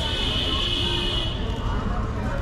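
Busy street ambience: a constant low rumble of traffic with voices, and a steady shrill tone for about a second and a half at the start.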